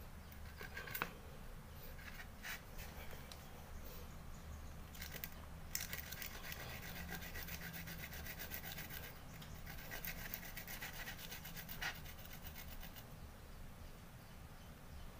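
Fresh turmeric root grated by hand on a coconut grater lined with banana leaf, pushed up and down in scratchy rasping strokes. A few scattered scrapes come first; from about five seconds in the strokes run fast and steady until shortly before the end.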